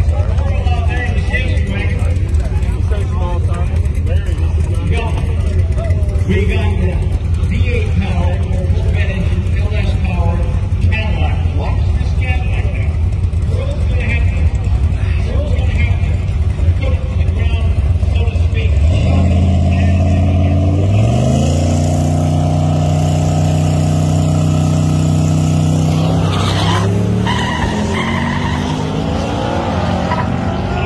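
Cadillac CTS coupe's engine running steadily at the drag-strip start line, then launching a little under two-thirds of the way in: the engine note climbs hard, drops back at each gear change and climbs again, about three shifts in all.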